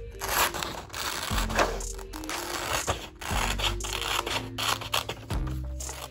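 Scissors snipping through a glossy magazine page in a run of short cuts, over background music.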